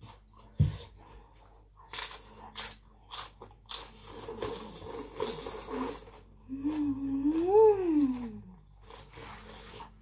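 Close-up eating of tam sua, spicy pounded salad with khanom jeen rice noodles, fresh shrimp and crisp raw vegetables. There is a sharp knock about half a second in, then crunchy chewing, a slurp of noodles, and a hummed "mmm" that rises and falls in pitch, followed by more chewing.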